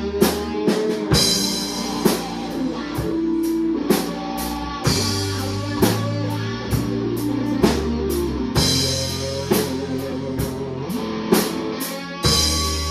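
Live rock band playing an instrumental passage: electric guitars over drum kit and sustained bass notes, with a cymbal crash about every four seconds.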